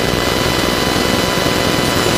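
Steady background noise: an even hiss with a few faint, steady high tones, holding at one level throughout.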